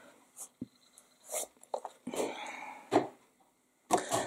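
White plastic stamp pad case being closed and set aside: a few short, separate clicks and knocks, the loudest about three seconds in, with a brief soft rustle a little after two seconds.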